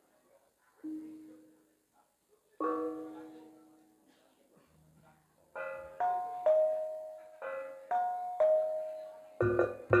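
Javanese gamelan beginning a piece. A few single bronze notes ring out sparsely, then from about halfway struck metal notes follow about two a second, and near the end the ensemble comes in with louder, deeper drum and gong strokes.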